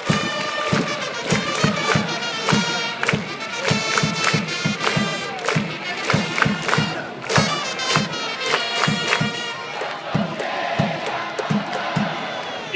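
Japanese pro-baseball cheering section performing a player's cheer song: a stadium crowd sings and chants along with a brass melody over a drum beating steadily about three times a second.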